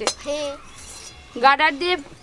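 A single sharp metal clink of kitchen utensils at the start, followed by short bursts of a woman's speech.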